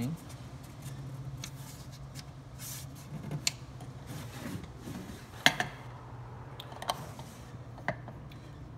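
Wooden clicks and knocks as the drawers and locking tabs of a kiri-wood chest are handled, the loudest a sharp knock about five and a half seconds in, over a steady low hum.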